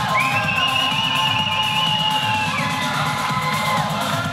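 Arena music playing over a cheering crowd, with one long, high, wavering cry rising above it for about two and a half seconds.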